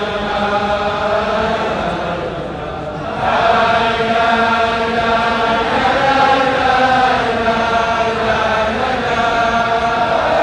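A large crowd of men chanting a slow melody together in long held notes, the singing growing louder about three seconds in.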